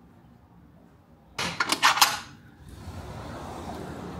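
A short, loud clatter of several sharp clicks and knocks about a second and a half in. It is followed by a steady hum of distant street traffic and city air that carries on to the end.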